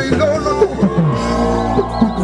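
Loud live band music with several voices singing into microphones over a heavy bass line.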